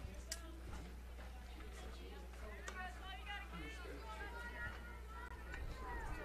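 Faint distant voices at the ballfield, with no close speech, over a steady low hum.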